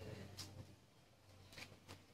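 Near silence: room tone with a faint steady low hum and a few faint, brief clicks.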